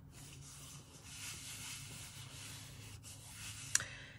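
Hands rubbing and smoothing a glued cardstock panel flat onto its card backing: a faint, even rubbing, with a short tap near the end.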